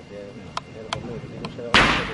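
A heavy medicine ball thrown hard against a wall hits it with one loud thud near the end, ringing briefly in the hall. A few faint ticks come before it.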